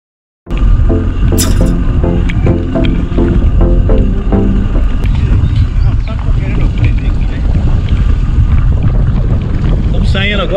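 Steady heavy rumble of wind buffeting the camera microphone and a bicycle rolling over cobblestones. A short run of quick stepped musical notes plays over it in the first few seconds.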